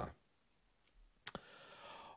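Near silence broken by a single short, sharp click a little past a second in, followed by a faint in-breath.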